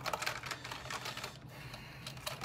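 A quick run of small clicks and clatter from hand tools and small electrical parts being worked by hand on a bench, busiest for the first second and a half, then sparser. A low steady hum runs underneath.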